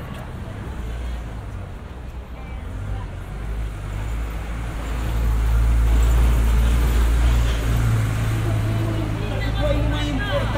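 Low rumble of a motor vehicle's engine in street traffic, building up and loudest past the middle, with people talking as they walk by.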